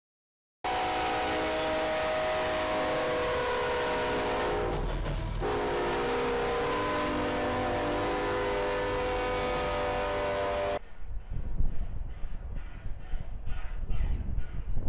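Diesel locomotive multi-chime air horn sounding a steady chord in two long blasts, with a short break about five seconds in; it cuts off suddenly near eleven seconds. A quieter run of even, rapid beats with a faint ringing tone follows, about three a second.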